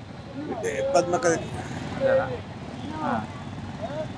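A man speaking in short, halting phrases, with steady street traffic noise underneath.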